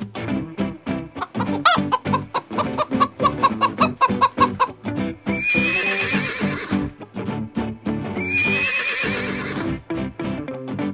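Chickens clucking, then a horse whinnying twice, the first call starting about five seconds in and the second about eight seconds in, each lasting about a second and a half, over background music with a steady beat.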